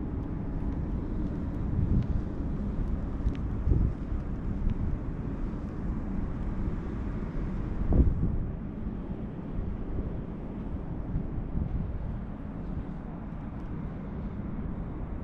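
Outdoor ambience: a steady low rumble with wind buffeting the microphone, which thumps about two, four and eight seconds in.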